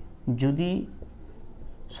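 A marker pen stroking on a writing board, underlining figures, in the quiet after one short spoken word. The word is the loudest sound; the marker strokes are faint.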